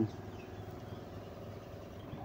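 Steady quiet background hum made of several low steady tones, with no sudden sounds; the tail of a spoken word ends right at the start.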